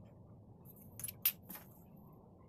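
Three quick, sharp clicks about a quarter second apart, the middle one loudest: small hard craft pieces being handled.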